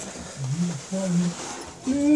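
A man's voice: two short, low vocal sounds, about half a second and about a second in, with no clear words.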